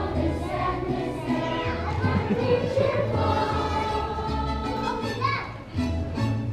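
Children's choir singing together over an instrumental accompaniment with a stepping bass line.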